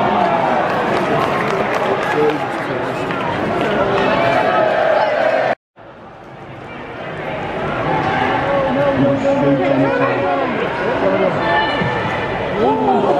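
Football crowd in the stands, many voices shouting and chanting at once. The sound cuts out abruptly about halfway through, then builds back up over a couple of seconds.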